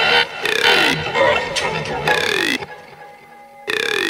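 Electronic music: a gurgling synth sound played in repeated short phrases whose pitch slides downward. It thins out for about a second near the end, then one last short phrase comes in.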